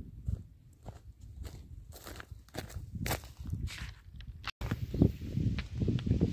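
Irregular footsteps of a person walking on dry, stubbly field soil, over a low rumble of wind and handling on the microphone.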